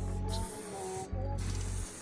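Aerosol spray-paint can hissing as it is sprayed, cutting out briefly about a second in, over a background music beat with heavy bass and a melody.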